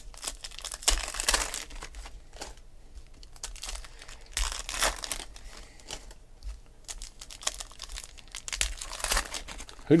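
Foil trading-card pack wrappers crinkling and tearing open in the hands, several crackly rustles with quieter card handling between them.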